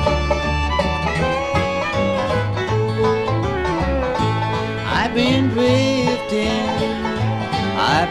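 Bluegrass band playing the instrumental opening of a song: banjo and guitar over pulsing bass notes, with sliding notes about five seconds in and again just before the end.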